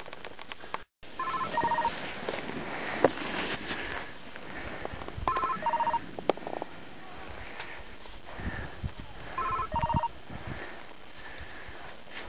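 A telephone ringing three times, about four seconds apart, each ring a trilling electronic tone, over a steady rushing noise of riding down the snow. The sound cuts out for a moment just before the first ring.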